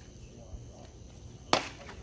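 A baseball pitch popping into the catcher's mitt: one sharp crack about one and a half seconds in, over low background chatter.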